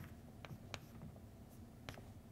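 Chalk writing on a blackboard: a few short, sharp taps and scrapes as the chalk strikes and drags across the board, in a quiet room.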